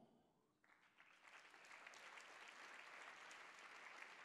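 Faint applause from a congregation, starting just under a second in and swelling a little before holding steady.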